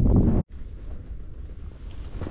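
Wind buffeting the microphone in a loud low rumble, cut off abruptly about half a second in, then a quieter steady low rumble of wind.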